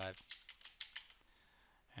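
Computer keyboard typing: about ten quick keystroke clicks in the first second or so, as numbers are typed into software fields, then only faint room noise.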